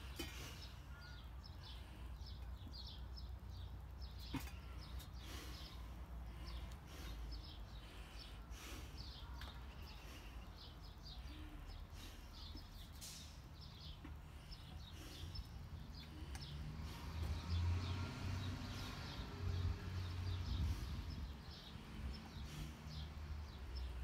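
Outdoor ambience: small birds chirping over and over above a low rumble that grows louder in the last few seconds, with a single sharp click about four seconds in.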